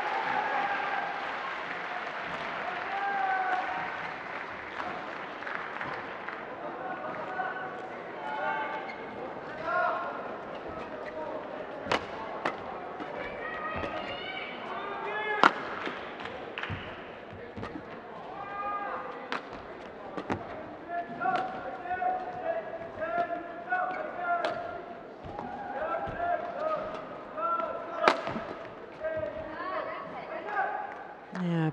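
Badminton rally: players' court shoes squeaking on the synthetic court mat as they move, with sharp racket strikes on the shuttlecock. The hardest hits come about 12 s in, about 15 s in and near the end. Applause tails off over the first few seconds.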